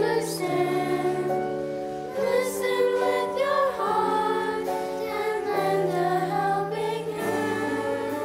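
A group of children singing a song together over instrumental accompaniment, with held bass notes changing every second or so.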